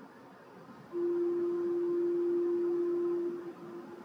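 A single steady musical note, held for about two and a half seconds from about a second in and then fading: the starting pitch given to the choir just before it sings the antiphon.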